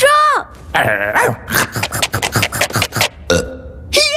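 Cartoon sound effect of a pet ladybird rapidly chomping through and eating a pair of slippers: a quick run of short bites, about six a second, stopping shortly before the end.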